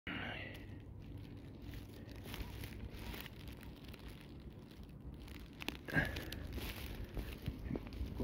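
Low rumbling outdoor noise, typical of wind on a phone microphone, with scuffing handling sounds and a few sharp knocks about six seconds in.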